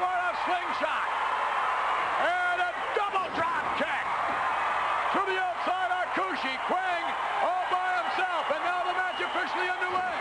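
A man's voice shouting short calls over and over that are not words, each rising and falling in pitch. The calls come about two a second in the second half, over a steady background noise.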